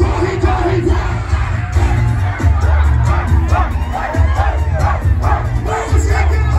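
A large crowd singing and shouting along over loud amplified music with a heavy, pounding bass.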